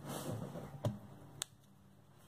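Faint handling of cut cardstock pieces on a craft cutting mat: a soft rustle and two light ticks near the middle.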